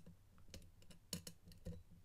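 Faint, scattered light clicks and scrapes of a hook pick working the serrated pin tumblers of a practice lock under tension, about five small ticks.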